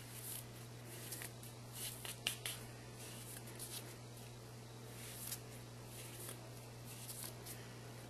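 Faint rustling and swishing of cut T-shirt jersey strips being pulled taut and handled, with a few soft light clicks, over a steady low hum.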